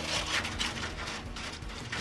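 Irregular rustling and scraping as a stick is worked about among dry plant debris inside a reptile enclosure.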